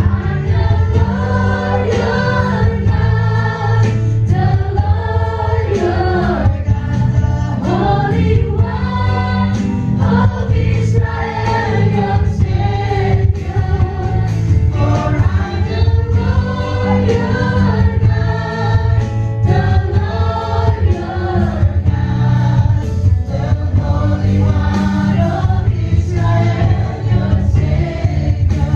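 A live church worship band plays a gospel song: a drum kit keeps a steady beat under a lead singer, with many voices singing along.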